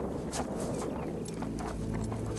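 A horse's hooves walking on wet, soft moorland ground: a loose series of soft, uneven steps. A low, steady drone comes in about two-thirds of the way through.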